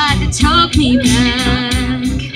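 A woman singing a country ballad live through a PA, holding long notes with vibrato over a recorded backing track of guitar and drums, with a short break between two held notes about half a second in.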